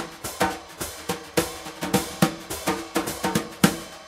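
Music: a drum kit playing a steady beat on its own, starting suddenly after silence.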